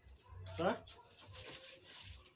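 A man says one short word; otherwise only faint rustling as a small plastic bag is handled over a bucket.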